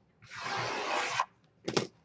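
A hand sliding across the lid of a trading-card box, one rubbing hiss of about a second, then a short knock near the end.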